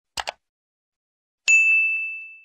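Subscribe-button sound effect: two quick mouse clicks, then a bright notification-bell ding about a second and a half in that rings out and fades.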